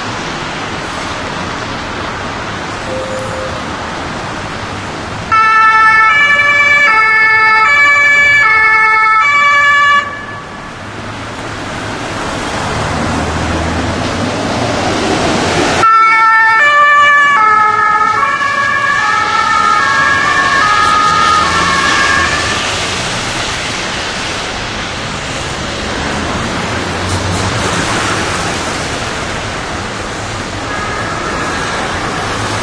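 Ambulance's electronic two-tone Martinshorn siren (Hänsch DBS 3000), alternating high and low, in two loud spells over road traffic noise. The first breaks off abruptly about ten seconds in. The second starts abruptly about sixteen seconds in, drops in pitch as the vehicle passes, and fades out, leaving engine and traffic noise.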